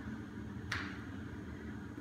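A single quick swish or scuff of footwork about two-thirds of a second in, as the body drops into a deep low stance, over a faint steady low hum.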